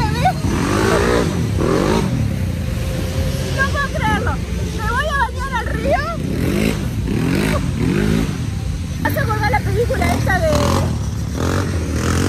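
Dirt bike engines running nearby, revving up and down several times over a steady low rumble, with people's voices talking in the background.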